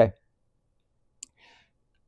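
The end of a spoken "okay", then a quiet pause holding one faint, short click about a second in and a soft breath just after it.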